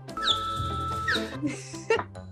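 A comic sound effect laid over background music: a held whistle-like tone of about a second with a short pitch slide at each end, followed by squawky, cluck-like pitched sounds.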